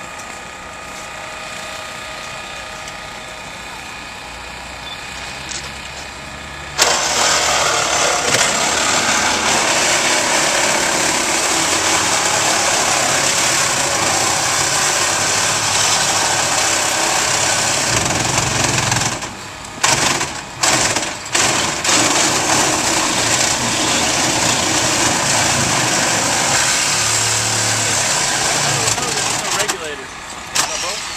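Engine-driven powered rescue equipment running: a steady engine sound for the first several seconds, then, about seven seconds in, a much louder hissing machine noise starts suddenly and runs on. Around twenty seconds in it cuts out briefly and comes back in a few short bursts before running steadily again.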